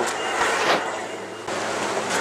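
Rustling and handling noise from a handheld camera carried on the move, an even hiss with a few faint knocks.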